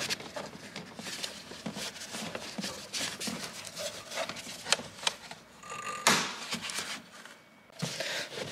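Hard plastic clicks, knocks and rubbing as a new air filter housing in a BMW 530d engine bay is pressed into place and its clips are fastened. A louder scraping rush comes about six seconds in.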